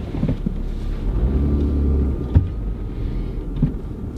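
Car running, heard inside the cabin: a low engine and road rumble that swells for about a second in the middle, with a single sharp knock just after two seconds.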